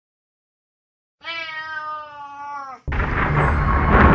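A cat gives one long meow, its pitch sinking slightly toward the end. Near the end loud music cuts in abruptly.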